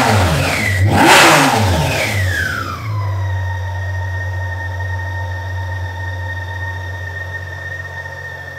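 BMW K1600 GTL's warmed-up inline-six engine revved twice with quick throttle blips, the second one longer, then dropping back to a steady idle about three seconds in. It revs freely and runs smoothly with no misfire, the faulty ignition coil on cylinder two and the spark plugs having been replaced.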